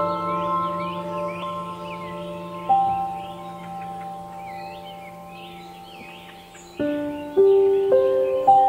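Ambient background music of slow, ringing bell-like notes, a new note struck about a third of the way in and several more near the end, with birds chirping throughout.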